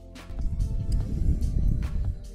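Low, irregular rumbling handling noise with a few light knocks, from about half a second in until the end, over steady background music: things on the desk being moved while a paint-stained paper towel is shifted across the painting.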